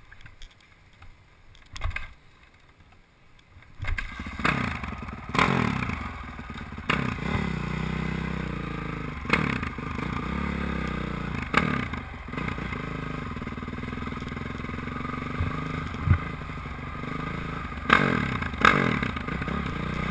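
Honda CRF450 dirt bike's four-stroke single-cylinder engine, heard from a camera mounted on the bike. Quiet for the first few seconds, then the engine comes in about four seconds in and runs with repeated throttle blips and revs as the bike rides off.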